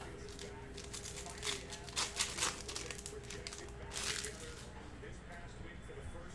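Cellophane wrapper of a trading-card pack crinkling and tearing as it is opened by hand, a run of sharp crackles from about a second in until about four seconds.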